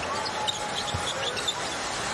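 Basketball dribbled on a hardwood court, a few bounces, with short sneaker squeaks over steady arena crowd noise.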